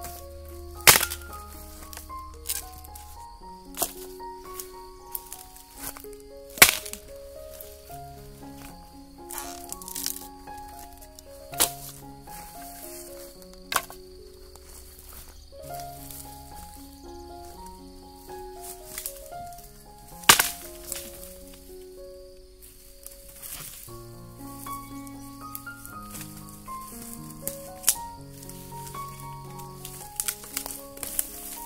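Background music with a stepped melody, over which come sharp cracks at irregular intervals, the loudest about a second in, near seven seconds and about twenty seconds in: a wooden stick striking and snapping dry stalks and branches in undergrowth.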